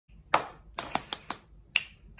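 A sheet of drawing paper handled by fingers, giving about six sharp clicks and crackles, irregularly spaced.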